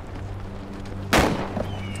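A single loud bang about a second in, sharp with a short fading tail, over a steady low hum.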